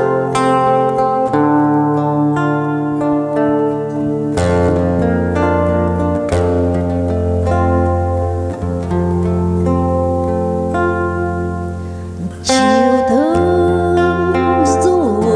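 Nylon-string guitar playing a slow introduction, plucked chords ringing over a long-held low bass note. A man's singing voice comes in near the end.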